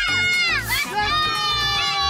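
Young girls shrieking with excitement in long, drawn-out cheers that slide down in pitch, one dipping sharply early and another held and falling slowly through the rest. Background music with a steady low beat runs underneath.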